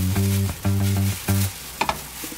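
Background music with a low, note-by-note melody that breaks off about a second and a half in, over the steady sizzle of japchae glass noodles tipped from a plastic bag into a hot frying pan.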